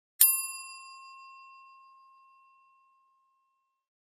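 Notification-bell sound effect from a subscribe animation: a single bell ding that rings out and fades over about three seconds.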